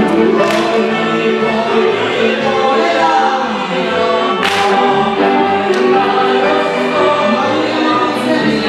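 Live Wallachian folk dance music with many voices singing the tune together, over a steady bass beat.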